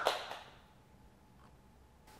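Clapping dying away in the first half second, then near silence: room tone.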